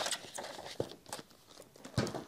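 Large hardcover omnibus books being handled and moved together on a table: dust jackets rustling, with several light knocks.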